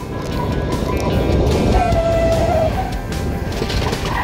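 Background music over vehicle and tyre noise from a pickup truck driving with a Grappler arresting net wound around its rear tyre. A short held tone sounds about two seconds in.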